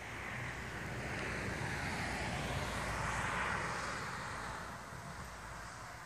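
A car passing by on the road, its engine and tyre noise building to a peak about halfway through and then fading away.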